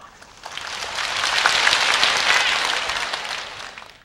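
Audience applauding: the clapping swells within the first second, then thins out and cuts off abruptly at the end.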